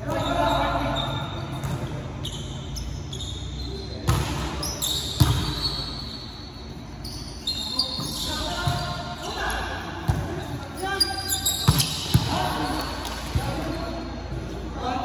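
Volleyball rally in a large echoing gym: a volleyball being hit and slapping the floor in several sharp smacks, the loudest near the end, with players calling out to each other.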